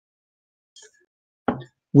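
Near silence broken by a single short, soft pop about one and a half seconds in. A man's voice begins just at the end.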